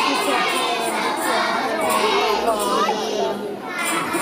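Many small children's voices at once on stage, a jumble of chattering and calling out, over a murmuring audience.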